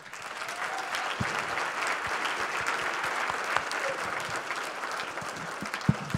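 Audience applauding steadily, with one sharp knock near the end.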